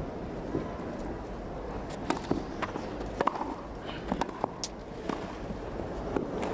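Tennis rally on a grass court: a tennis ball struck by rackets, with a string of sharp hits and bounces starting about two seconds in, over a hushed crowd.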